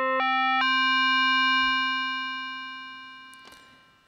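Korg Kronos MOD-7 FM synthesizer tone: one held note whose timbre brightens in steps, gaining upper overtones each time the modulating oscillator's frequency ratio is raised toward 5. It then fades away over about two seconds.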